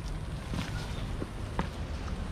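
Low steady rumble of wind on the microphone, with a few faint clicks.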